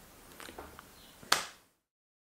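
A single sharp snap just over a second in, after a few faint soft clicks.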